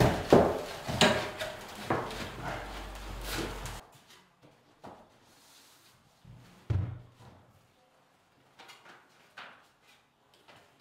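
Laminate floorboards being slotted together and knocked into place: a quick run of knocks and clicks, then scattered knocks with one louder thud about seven seconds in.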